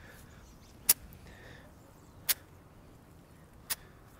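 Three short, sharp clicks about a second and a half apart over faint outdoor hiss: a 54-degree wedge clipping the wet turf on practice swings.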